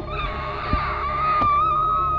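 A long high-pitched held note that wavers slightly and rises a little toward the end, over faint background music.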